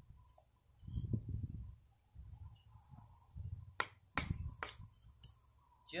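A knife working a dry palm branch: four sharp cracks in quick succession near the end, over low rumbling gusts of wind on the microphone.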